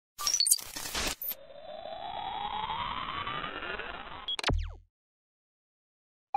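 Edited intro sound effects: a quick flurry of clicks and chirps, then a rising sweep lasting about three seconds that ends in a sharp hit with a short low boom, then silence.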